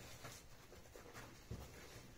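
Near silence: quiet room tone with a few faint soft taps and handling sounds, the clearest about one and a half seconds in.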